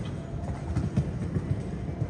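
A show-jumping horse's hooves thudding dully on the sand footing of an indoor arena as it jumps and canters on, over a low rumble.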